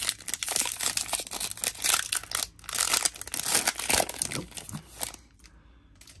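Foil trading-card pack being opened by hand: a dense crackling rustle of the wrapper crinkling and tearing, with a short lull about halfway, stopping about a second before the end.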